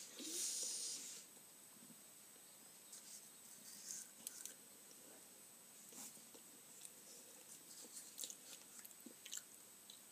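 Faint eating and handling sounds: small scattered clicks and mouth noises of a person chewing and handling a mousse-filled chocolate egg. A short rushing noise comes in the first second.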